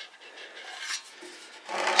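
Faint rubbing and handling noise with a few light clicks.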